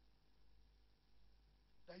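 Near silence: room tone with a faint steady low hum, a man's voice starting again right at the end.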